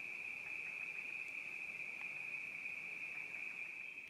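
Night insects calling in a steady, continuous high-pitched chorus.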